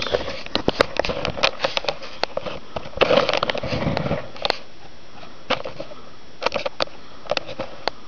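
Handling noise close to the microphone: irregular clicks and knocks, with a louder burst of rustling about three seconds in.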